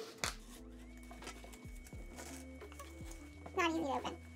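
Soft background music with steady held notes under the handling of a shoe box and its paper wrapping: a sharp rustle or snap about a quarter second in, then scattered light clicks. A brief vocal sound comes near the end.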